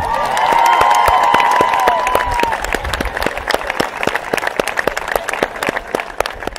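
Large crowd applauding right after the artist's name is announced. Voices cheer over the clapping for the first two seconds or so, and the clapping slowly thins out toward the end.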